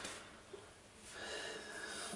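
A faint breath close to the microphone over a low, steady hiss.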